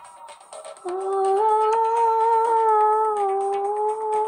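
A woman's voice humming one long held note that comes in about a second in, rises slightly and then eases back down. It sits over a backing track with a steady ticking beat.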